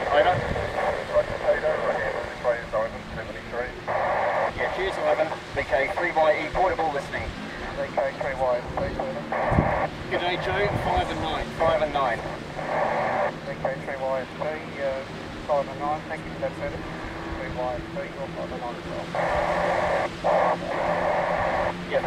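Amateur FM satellite downlink (AO91) heard through a receiver's speaker: thin, band-limited voices of distant operators exchanging call signs and reports, too weak and distorted to follow. Several times the voices give way to patches of FM hiss, as signals fade or stations double up.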